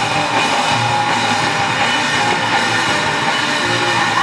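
Live heavy rock band playing loudly: electric guitar, bass guitar and a drum kit together.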